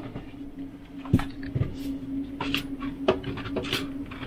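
Handling noises from fitting a tension rod across a refrigerator shelf: several short knocks and rubs of the rod and cans against the shelf, over a steady low hum.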